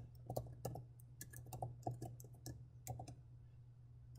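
Computer keyboard typing: faint, irregular keystrokes, roughly four a second, over a low steady hum.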